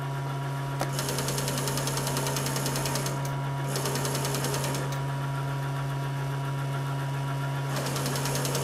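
Small DC electric motor running steadily on a test bench with a hum and a fast, even buzz; the buzz gets brighter about a second in and dips briefly a little later.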